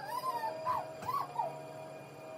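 A dog whining: four or five short, high whimpers, each rising and then falling in pitch.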